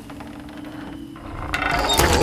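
A ratcheting mechanism clicking rapidly over a steady low hum, growing louder in the second half. These are the sounds of the creature's home-made catapult and mechanical-wing contraption being worked by hand.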